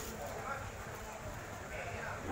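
Faint, brief snatches of voices over steady outdoor background noise; no distinct non-speech sound stands out.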